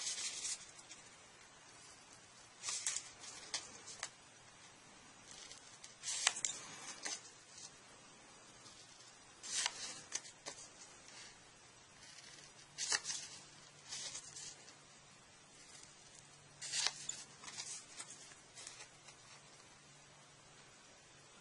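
Scissors snipping cardstock paper: short crisp cuts, singly or in quick twos and threes, every few seconds.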